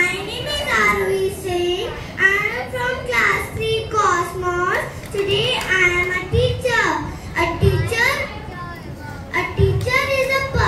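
A young girl speaking into a microphone in a high voice; only her speech stands out.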